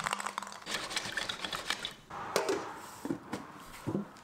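Hands moving metal hand-plane parts in a shallow tin of vinegar, the liquid splashing, followed by a few light clicks and knocks in the second half as the tin's lid is pressed on.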